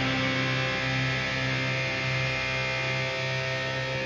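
Progressive rock instrumental passage: a held guitar chord rings on steadily, with no singing and no new strokes.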